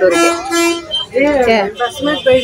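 A vehicle horn sounds one steady blast, a little under a second long, at the start, heard from inside a bus among people talking.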